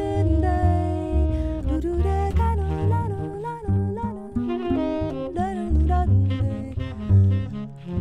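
Live jazz: a tenor saxophone playing a quick, moving melodic line over plucked double bass.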